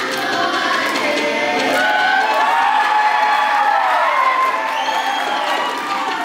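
Many voices singing together in long, sliding pitch arcs, the group singing that accompanies a Samoan seated dance, mixed with crowd cheering.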